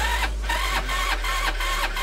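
Italika DS150 scooter's electric starter motor cranking its 150cc single-cylinder engine, a steady whirring with a regular pulse of about three beats a second. The engine does not catch because the spark plug is disconnected.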